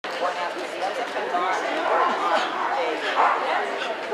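A dog barking over the chatter of many people talking in an indoor arena.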